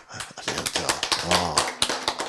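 A rapid, irregular run of small clicks and taps picked up close to a handheld microphone, with a brief low voiced sound about halfway through.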